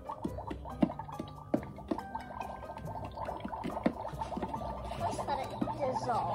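Magic Mixies toy cauldron playing warbling electronic sound effects while its wand stirs the potion, with scattered small clicks of the wand against the cauldron.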